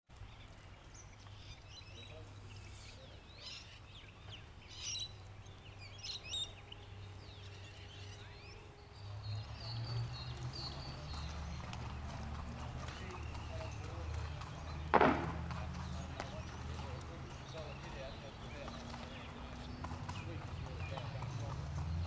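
Faint outdoor ambience: a low steady rumble with faint distant voices, a few light ticks in the first third and one sharp knock about fifteen seconds in.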